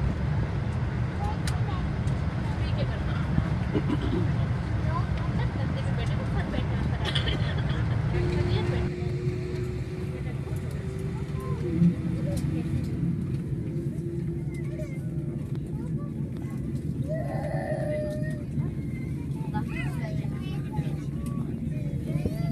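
Steady rumble and hiss inside an airliner cabin during pushback. About nine seconds in the higher hiss drops away sharply. A steady low hum sets in shortly before that and dips slightly in pitch near twelve seconds, where there is also a single short knock. Faint, indistinct voices can be heard near the end.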